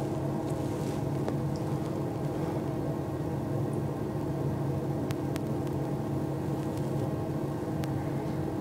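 A steady low mechanical hum, unchanging throughout, with a couple of faint sharp clicks about five seconds in and again near the end.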